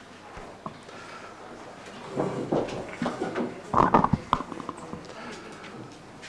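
Room noise in a meeting hall: indistinct voices talking low, loudest in the middle, with a few light knocks and shuffles of people moving at the tables.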